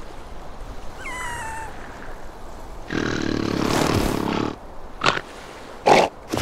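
Cartoon seal character's vocal sounds: a short falling squeak about a second in, then a longer rough grunt, followed by two short bursts near the end.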